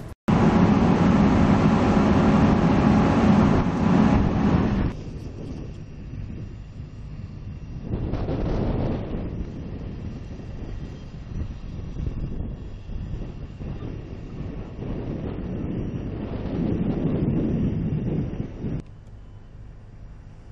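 Fire truck engine running steadily, loud and close for about five seconds, then a lower steady rumble that swells twice and drops again near the end.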